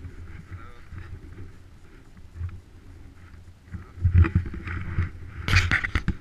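Wind rumbling on the microphone of a handlebar-mounted action camera, then loud knocks and rubbing from about four seconds in as the camera is handled.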